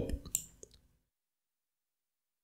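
Two short clicks of a computer mouse, about a third and two-thirds of a second in, then dead silence.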